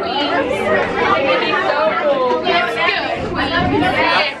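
Several people talking over one another: overlapping chatter of a crowd of passengers in a crowded cable-car cabin.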